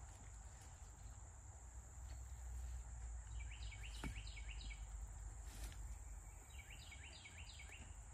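Woodland ambience: a steady high insect drone, with a bird giving two short series of four or five quick notes, one about three and a half seconds in and one near the end. There are also a couple of faint clicks.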